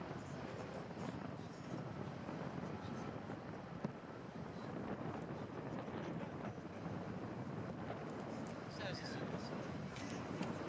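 Outdoor waterfront ambience: indistinct voices of people nearby over a steady rush of wind on the microphone.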